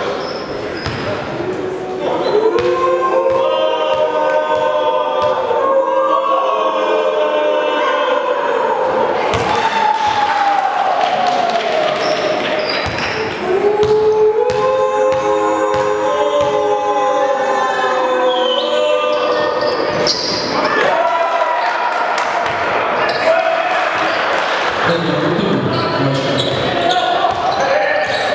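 A basketball bouncing on a gym's wooden floor during free throws, with a group of voices singing a drawn-out chant in two phrases of several seconds each, one early and one in the middle.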